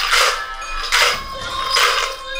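A pair of furi-tsuzumi, shaken hand drums with bells loose inside, jingling in three loud bursts about a second apart: near the start, about a second in, and near the end. Traditional Japanese dance music plays underneath.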